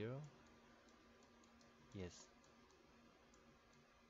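Faint, scattered light clicks and taps of a stylus writing on a pen tablet, over a low steady electrical hum.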